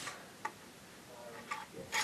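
A few faint, sparse clicks of plastic LEGO pieces being handled and pressed together.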